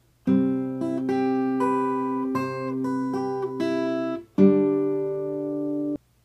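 Steel-string acoustic guitar with a capo, fingerpicked: a riff of plucked notes over held bass notes. After a brief gap about four seconds in, a louder chord is struck and left ringing until it cuts off suddenly just before the end.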